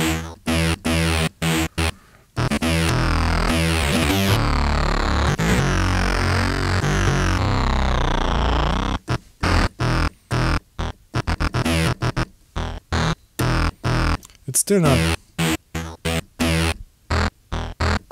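Sampled synth sound played from a keyboard through Logic Pro X's Sampler, with key velocity set to shift the sample start point. Short separate notes come first, then one note held for about seven seconds with pitches sweeping through it, then more short notes.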